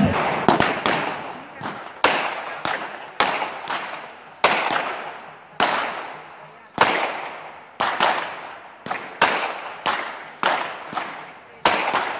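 Long whip cracked over and over in traditional New Year whip-cracking: about twenty sharp cracks at uneven intervals of half a second to a second, each trailing off in echo.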